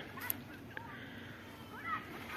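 A few faint, short animal calls, clustered near the end, with a light click about a third of a second in.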